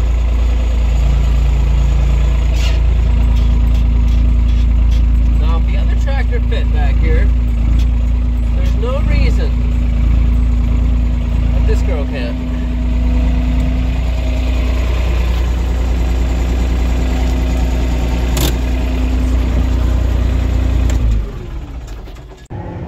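Small diesel tractor engine running steadily, heard from inside the cab, and shut off about a second before the end.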